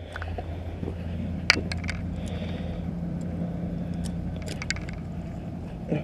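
A few sharp clicks of handling, heard over a steady low hum that carries a faint steady tone.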